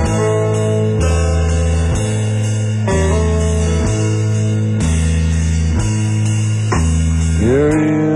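Live band playing the instrumental opening of a slow song: guitar and bass chords held and changing about once a second, with a steady high shimmer above them.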